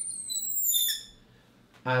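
Marker squeaking on a glass lightboard as a box is drawn: a high squeal with several thin tones sliding slowly downward, stopping about a second in. A man's voice starts again near the end.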